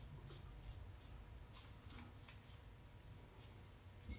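Near silence with a few faint scrapes of a Gillette Fusion razor's rear trimmer blade drawn over lathered ear hair.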